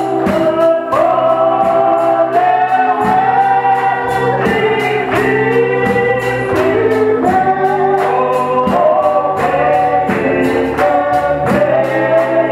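A man singing a gospel worship song into a microphone, with other voices singing along and instrumental backing that keeps a steady beat.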